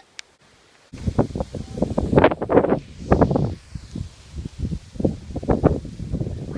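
Irregular rustling and crackling close to the microphone, starting suddenly about a second in after a near-silent moment and running on loudly and unevenly.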